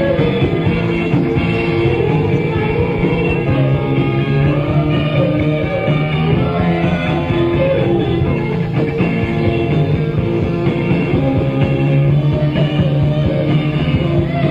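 A punk/deathrock band playing live: guitar, bass and drums in a loud, unbroken stretch of a song.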